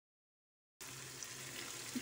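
Silence at first, then, about a second in, a faint steady sizzle of a tomato-onion-capsicum masala frying in a non-stick pan.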